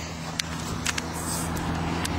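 Steady low background rumble and hum, with a few faint clicks.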